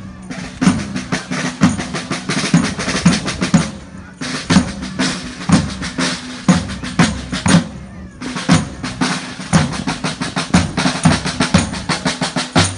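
Marching-band drums, a bass drum with tenor and snare drums, beating a walking march rhythm. The beat comes in phrases of about four seconds, each closed by a brief break.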